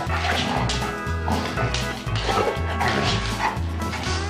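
Basset hounds barking several times in rough play, over background music with a steady beat.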